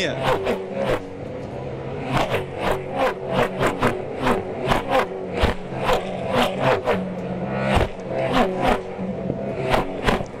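V8 Supercar touring car engines at racing speed, heard through a low onboard camera on one of the cars, with a quick series of sharp cracks, about two or three a second, over the engine note.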